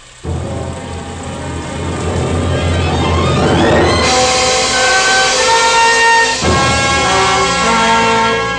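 Dramatic orchestral music cue: a low rumble comes in at the start and swells, then gives way about halfway through to loud held chords that change a few times.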